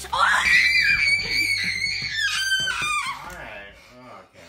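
A child's long, high-pitched scream of excitement: it climbs sharply at the start, holds high for about three seconds, then slides down and fades near the end.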